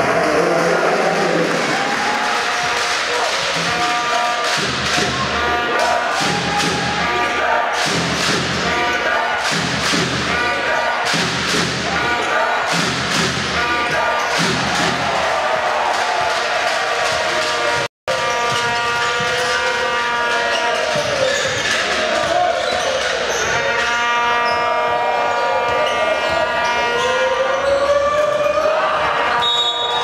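A basketball dribbled on a hardwood court, a run of bounces about once a second through the first half. Under it run music and voices in the arena.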